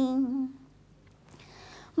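A woman's voice singing a Bengali Patachitra scroll song, holding a long steady note that fades out about half a second in; after a short pause comes a faint intake of breath before the next line.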